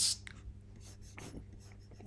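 Quiet recording-room background with a low, steady electrical hum and a few faint soft ticks.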